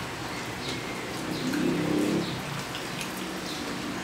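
Close-up eating sounds: small wet clicks and smacks of mouths chewing soft braised pork, scattered all through. About a second and a half in there is a brief hummed "mmm".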